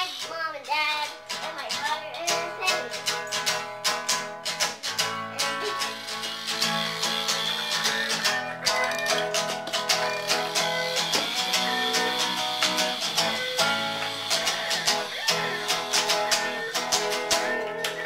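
Acoustic guitar strummed in a steady rhythm, with a child's singing trailing off just at the start.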